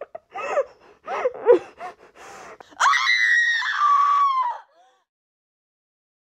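A woman whimpering in short, wavering sobbing cries, then a loud scream of about two seconds that drops in pitch near its end and cuts off.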